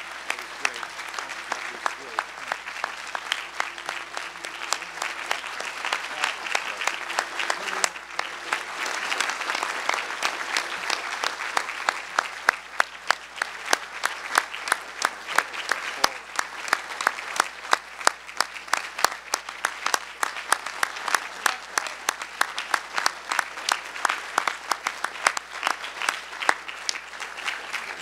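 Large audience applauding: a steady wash of clapping, with sharp individual claps close by standing out more clearly through the second half.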